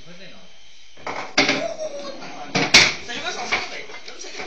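Pool balls clacking together on a pool table: two sharp knocks, about a second and a half in and again near three seconds, the second the louder.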